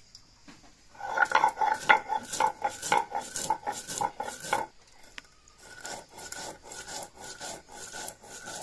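A stone grinding slab and cylindrical hand stone (shil-nora) grinding spices into a paste: rapid back-and-forth scraping strokes of stone on stone, about four a second. The strokes pause briefly about halfway through, then resume more softly.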